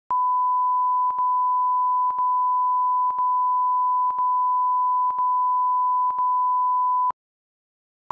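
Broadcast line-up tone: a single steady pure pitch with a brief dip about once a second, cutting off sharply about seven seconds in.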